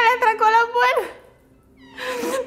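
A toddler's high-pitched, drawn-out vocalizing, wavering up and down in pitch for about a second before it stops.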